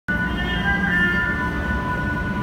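Subway train wheels squealing on the rails: several sustained high tones that waver slightly in pitch, over a steady low rumble.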